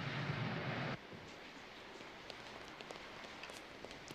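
A sedan's engine and road noise as it drives close past for about a second, then the sound cuts to a quiet, even background with faint scattered ticks.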